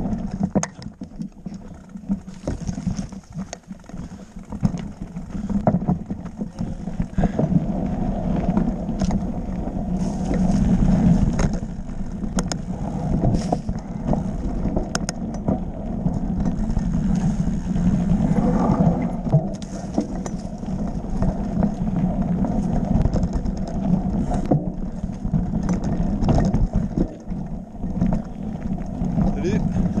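Mountain bike ridden over a rough, rocky dirt trail: a steady rumble from the tyres on stones and gravel, with frequent sharp knocks and rattles as the bike hits rocks.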